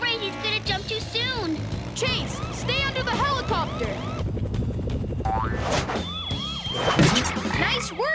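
Cartoon police siren in a fast yelp, its pitch rising and falling several times a second, over action music.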